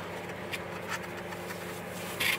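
Faint rustles and a few light clicks of gloved hands peeling back the leathery shell of a ball python egg, over a steady low hum.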